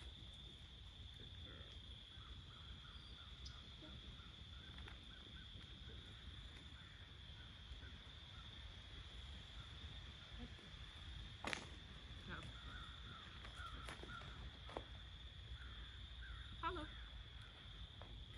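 Faint outdoor ambience: a steady high-pitched drone typical of insects, with scattered distant bird calls. One sharp click comes about eleven and a half seconds in.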